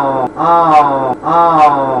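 A man's low voice chanting a short two-note phrase, a higher note falling to a lower one. The phrase repeats three times, nearly identical, about a second apart.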